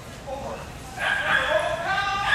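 Small dog yelling: a long, high-pitched yelp that starts about halfway through and holds on, the excited vocalising of a dog held on the start line of an agility run waiting for its release.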